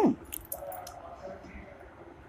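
A short voiced "hmm" right at the start, then a quiet pause in the reading with a few faint clicks and a faint steady hum lasting about a second.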